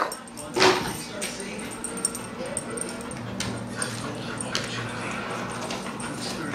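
A dog whimpering and yipping in excitement for a toy held out to it. A sharp loud yelp comes right at the start and another about half a second in, followed by quieter whines.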